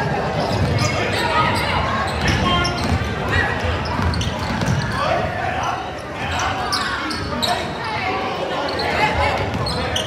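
Basketball game in a gymnasium: the ball dribbling and sharp sneaker and ball sounds on the hardwood floor, mixed with indistinct voices of players and onlookers calling out, echoing in the hall.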